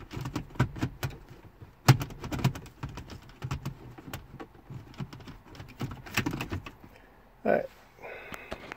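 Irregular plastic clicks, taps and light rattles of a 2010 Mercedes GL450's center-console trim piece being worked into its guides by hand. The loudest knock comes about two seconds in.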